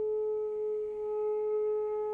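Saxophone holding one long, steady, nearly pure note.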